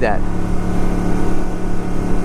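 1982 Honda Silver Wing's 500 cc V-twin engine running steadily as the bike cruises at a constant speed, with road and wind noise.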